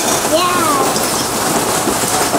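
Steady rain, heard as an even hiss.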